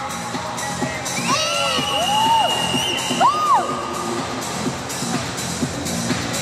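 Music with a steady beat playing over a crowd cheering, with a few rising-and-falling whoops.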